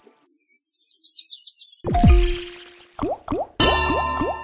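Online slot game sound effects. After a brief silence comes a quick run of high chirps, then a splashy spin sound with falling pitch sweeps about halfway in, and a few short rising bloops as the reels settle. A burst of game music starts near the end.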